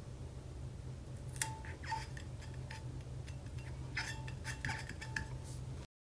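Faint, scattered light clicks and taps from handling a tumbler and pressing small vinyl stickers onto its base, over a low steady hum.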